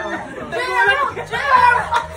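Several people talking and chattering over one another in a crowded room.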